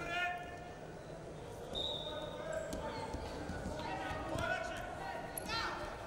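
Men shouting short calls across a large hall, with dull thuds of the wrestlers' bodies and feet on the wrestling mat. There is a brief high steady tone about two seconds in.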